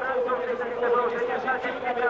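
A man's voice speaking in race commentary, with a steady hum running underneath.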